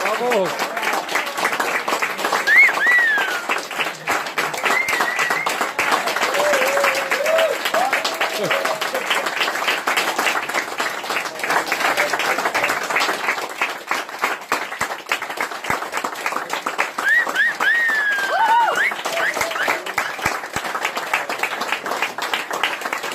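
Audience applauding steadily, with a few shouts and whoops from the crowd over the clapping at the end of a song.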